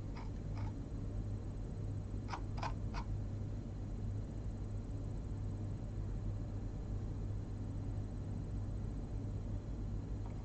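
Steady low hum of room and equipment noise, with a few faint, short clicks in the first three seconds, three of them close together.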